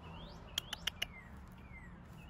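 Birds chirping faintly in the background, short gliding whistles repeated every half second or so. About half a second in comes a quick run of four or five sharp clicks.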